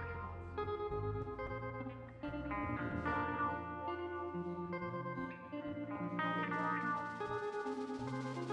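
Live rock band playing an instrumental passage: electric guitar through effects holds ringing chords and notes that change every second or so, over low sustained notes.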